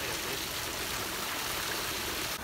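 Hundreds of small carp fingerlings thrashing in a net held at the pond surface, making a steady splashing of water.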